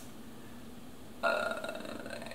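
About a second of quiet room tone, then a drawn-out, steady-pitched vocal sound from the woman that runs on into her next words.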